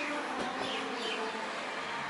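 A body rolling over on grass: a soft thump about half a second in, over a steady high outdoor hiss.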